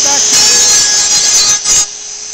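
Chicago Electric electric die grinder running at high speed, grinding into the car's sheet-metal hatch with a high steady whine that dips briefly twice near the end.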